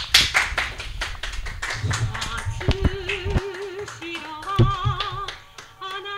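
Hand clapping with sharp taps, then closing music comes in about two seconds in: a held melody with a strong, even vibrato, voice-like.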